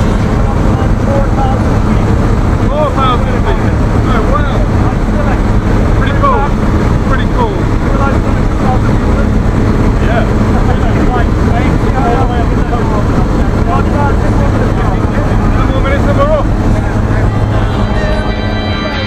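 Steady engine drone inside a light aircraft's cabin during the climb, with several people's voices talking over it, their words lost in the noise.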